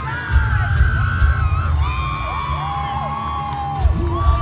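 Loud live rock band playing, with pounding drums and bass under long held, bending melody notes, heard from within a stadium crowd that whoops and yells.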